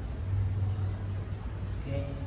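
A low steady rumble that swells slightly in the first second, with a faint voice near the end.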